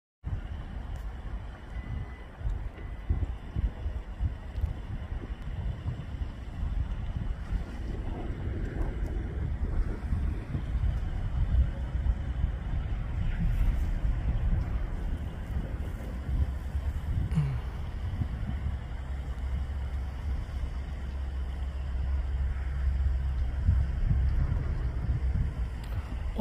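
Wind buffeting the microphone outdoors: a low, uneven rumble that swells and eases.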